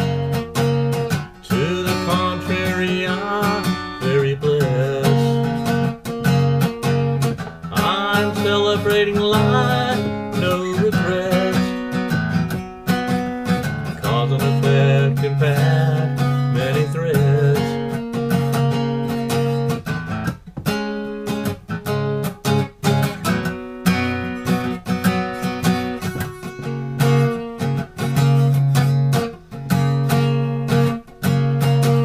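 Acoustic guitar strummed in steady chords, with a man's voice singing over it in stretches.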